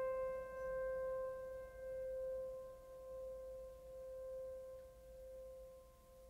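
Background music: a single held piano note with its overtones, slowly dying away with a gentle wavering in loudness.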